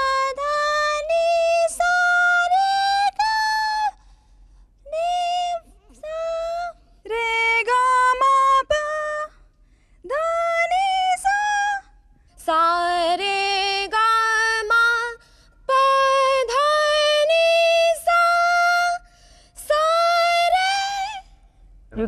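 Women singing sargam scale syllables (sa re ga ma pa) one after another in a vocal range test, each run moving up in steps of held notes and climbing toward higher notes. There are about seven short runs with brief breaks between them.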